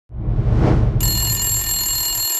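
TV game-show intro sound effects: a whoosh with a low rumble swells and fades over the first second, then a telephone-bell-like ringing tone starts suddenly about a second in and holds steady.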